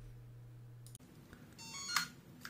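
Faint steady low hum, then near the end a short electronic beep made of several high tones held together for under half a second, closed by a sharp click.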